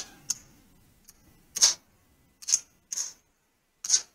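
Casino chips clicking against each other as a hand picks the losing bets up off the craps layout: about six sharp clicks at uneven intervals.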